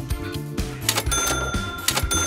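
Background music with a steady beat; about a second in, a bright bell-like ding sound effect comes in and rings on, the quiz's chime for revealing the answer.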